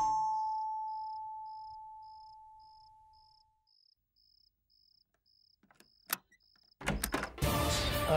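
A single bell-like note from the background score, struck as the scene ends, dies away over about three seconds. Under it, a faint high chirp repeats about twice a second. A sharp click comes about six seconds in, and background music comes back in near the end.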